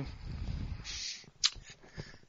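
Breath noise on a podcast microphone between turns: a low rough rumble of breathing on the mic, a short inhaled hiss about a second in, and a brief sharp mouth click or hiss about halfway through.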